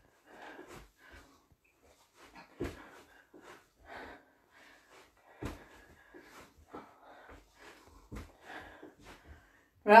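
A person breathing hard in short puffs while kicking, with irregular soft thuds of feet landing on the floor, two a little louder than the rest.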